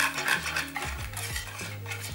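A metal spoon scraping melted chocolate out of a metal saucepan and stirring it into cake batter in a mixing bowl, in a quick run of short scrapes and clinks.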